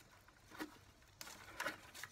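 Faint rustling and crackling of potting soil and strawberry roots as hands pull the plants apart, with a few brief crackles.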